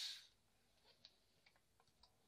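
Near silence around someone drinking from a large plastic beer bottle. There is a brief breathy hiss right at the start, then a few faint, scattered ticks as the bottle is lowered and handled.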